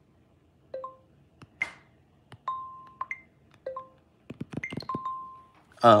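The Copied clipboard app's sound effects being previewed one after another on an iPad Air 2's speaker. About seven short electronic pings at low, middle and high pitches play a second or so apart, two of them held briefly, with light clicks between them.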